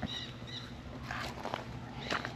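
Quiet outdoor background with a few faint, short high chirps and light footsteps.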